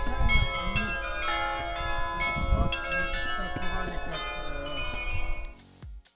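Carillon of Prague's Loreta tower ringing, many tuned bells striking one after another and ringing together in a melody. Wind rumbles on the microphone underneath. The ringing cuts off abruptly about five and a half seconds in.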